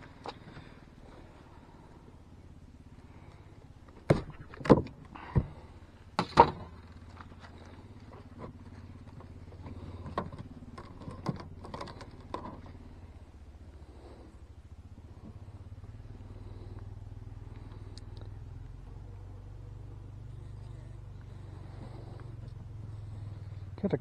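Wooden beehive boxes knocking and scraping as the upper box is worked loose and lifted off the hive: a cluster of sharp knocks a few seconds in, then lighter clicks. A low steady hum builds in the second half.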